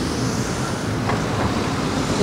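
Road traffic passing close on a city street: a steady rush of engine and tyre noise as a car and then a van drive by.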